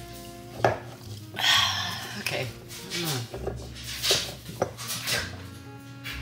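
Hands straining at the stuck lid of a glass bottle through a paper towel, with scattered clicks, knocks and rasps of glass and cap, a sharp knock a little over half a second in. The lid does not come free.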